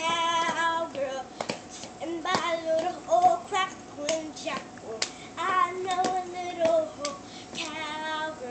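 A young girl singing a cowboy song unaccompanied, her voice wavering in pitch on held notes, with irregular sharp claps now and then.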